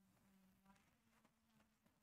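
Near silence: room tone with a very faint steady low hum.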